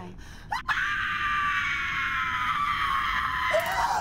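A woman screaming: a sharp click just under a second in, then one long, high scream of about three seconds.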